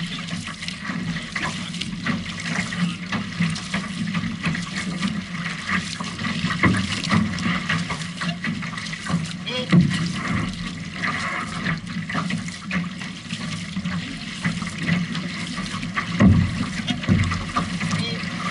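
Six-person outrigger canoe under way: paddle blades dipping and pulling through the water stroke after stroke, with water splashing and rushing along the hull.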